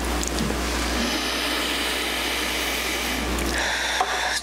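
A steady rushing noise with no clear pitch, about as loud as the speech around it, holding evenly for about four seconds before dying away.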